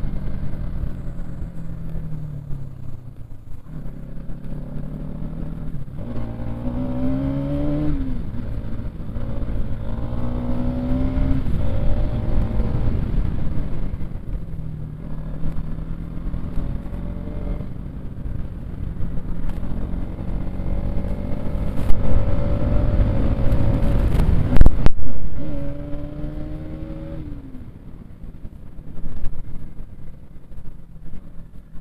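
Bajaj Pulsar NS200's single-cylinder engine pulling through the gears on the move, its pitch climbing and then dropping at each shift, over steady wind and road noise on the microphone. The loudest stretch comes a little past two-thirds of the way through.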